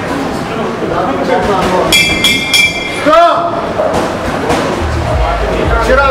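A boxing ring bell rung in a few quick strikes about two seconds in, marking the end of the round, over voices in the venue.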